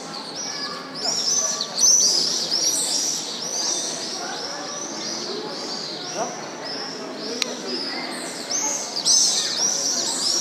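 A flock of small birds chirping busily and without pause, in a dense chorus of high, quick chirps, with a murmur of voices underneath.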